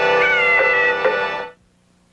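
A cat's single meow, falling slightly in pitch, over the held closing chord of the music. Everything cuts off about a second and a half in, leaving near silence.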